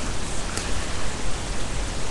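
Steady, even hiss from a webcam's built-in microphone: its noise floor, with no other sound over it.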